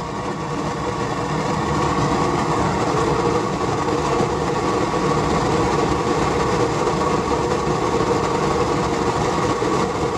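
Homemade waste-oil burner running: the roar of the oil-and-air flame together with the drone of the 400-watt jumping castle blower that feeds it air. It grows louder over the first couple of seconds, then holds steady.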